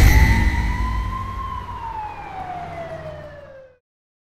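Channel end-card sound effect: a low rumble with a single tone that glides up and then slowly falls, cutting off abruptly just before the end.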